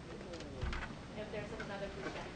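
A person speaking faintly and indistinctly, away from the microphone, with a low, murmuring voice.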